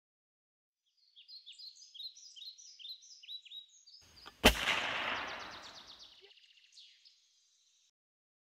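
Birds chirping in quick repeated downward notes, then a single loud gunshot about four and a half seconds in that echoes away over a couple of seconds. A fast bird trill carries on briefly after the shot.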